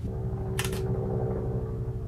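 Helicopter passing overhead: a steady droning hum with even, level tones, and a sharp click about half a second in.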